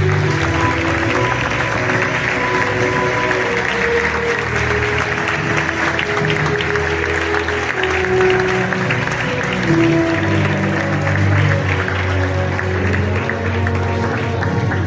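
An audience applauding steadily, with music of long held notes playing underneath.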